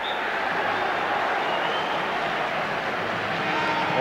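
Football crowd noise, a steady wash of many voices reacting to a near miss and the goalkeeper's save.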